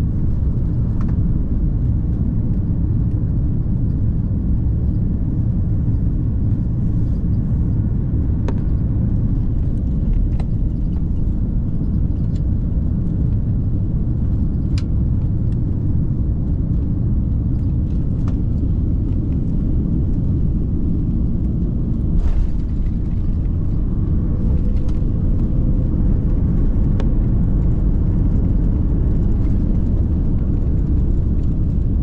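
Cabin noise of an Airbus A330-900neo on final approach: a steady low rumble of its Rolls-Royce Trent 7000 engines and airflow past the fuselage. About two-thirds through comes a single jolt as the main wheels touch down, and the rumble grows louder during the landing rollout.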